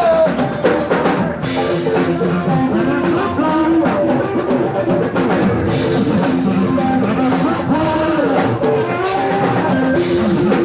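Rock band playing live: electric guitars over a full drum kit, loud and continuous.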